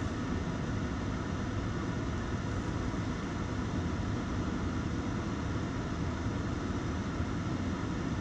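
Steady low hum and hiss inside a stopped car's cabin with the engine idling.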